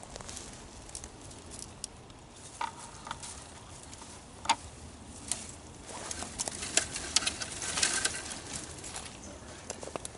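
Branches, leaves and dry brush rustling and crackling as someone pushes through close to the microphone, with irregular sharp snaps that grow denser for a couple of seconds past the middle.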